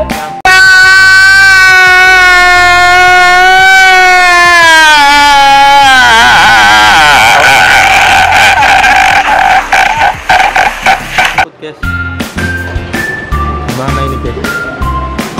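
Comedy sound effect of a man crying out loudly: one long held wail that sags and falls in pitch a few seconds in, then breaks into shaky, sobbing cries that cut off suddenly near the end. Light background music with a beat and bell-like notes follows.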